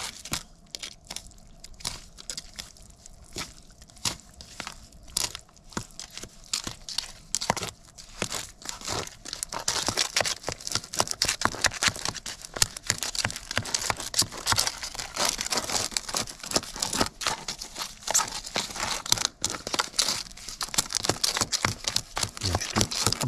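A metal putty knife stirring and scraping a fast-setting crack-repair mortar in a plastic tub, a steady run of gritty scrapes and clicks. It grows louder and busier about halfway through.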